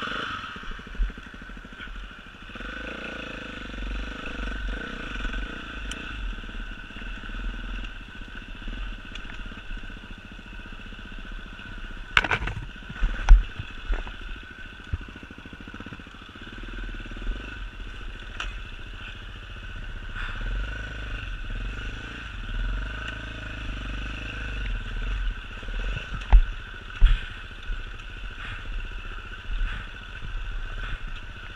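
Enduro motorcycle engine running as the bike is ridden over a rough dirt trail, its note swelling and easing with the throttle. A few sharp knocks, about twelve seconds in and again near the end, as the bike jolts over the ground.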